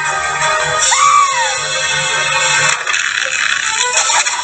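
Cartoon soundtrack: music, with a short rising-then-falling squeal from a character about a second in, and a hissing noise taking over near the end.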